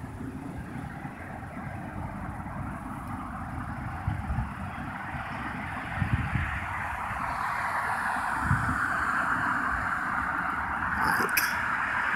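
Outdoor background noise like distant road traffic, a steady hiss that swells slowly louder over the last few seconds as a vehicle nears. A few low thumps come through on the phone's microphone.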